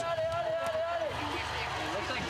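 A voice holds one long, level note for about the first second, then faint voices continue over steady outdoor background noise.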